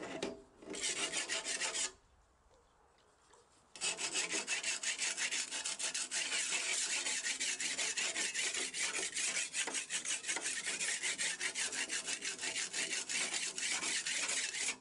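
Hand-sharpening the metal blade of a garden hoe: rapid rasping scrapes of a sharpening tool along the edge, several strokes a second. A short run of strokes about a second in, a pause, then steady stroking from about four seconds on.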